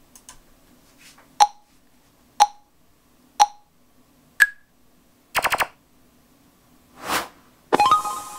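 Sonarworks Reference 4 calibration software's listening-position measurement: four short countdown beeps a second apart, the last one higher, then a quick run of rapid clicks, a short burst of noise, and a brief two-tone chime as the measurement completes.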